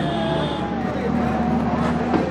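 A motor vehicle engine running close by, a steady low hum, with people talking in the background.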